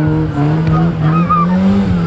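First-generation Mazda MX-5 Miata's four-cylinder engine held at high revs as the car spins on dirt, its pitch climbing slowly and then dropping just before the end.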